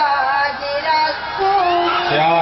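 A woman singing Urdu verse, holding long notes that bend and waver in pitch.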